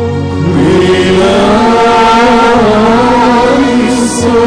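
Syriac Orthodox liturgical chant: voices singing a slow, melismatic line over steady held low notes, with a brief hiss right at the end.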